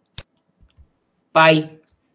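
A single sharp click about a fifth of a second in, followed by a few faint ticks, as the slide is being annotated; then a man's voice says "pi", the loudest sound.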